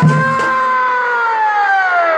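Chhau dance accompaniment: a shehnai holds one long, loud note that slowly sags in pitch, as the drumming stops just after the start.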